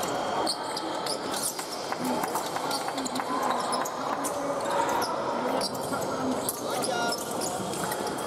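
Fencers' shoes stamping and squeaking on a metal piste in quick, irregular footwork, many sharp knocks scattered throughout, with one short squeak about seven seconds in, over a steady murmur of voices in a large hall.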